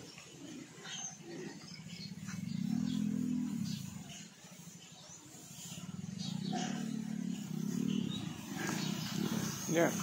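Domestic pigs grunting in their pens: one long, low grunt about three seconds in, then a run of low grunts through the second half.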